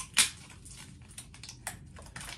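A few sharp clicks and taps of small packaging being handled, the loudest just after the start, then faint scattered ticks and one more click near the end.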